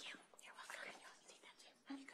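Near silence with faint whispering and hushed voices.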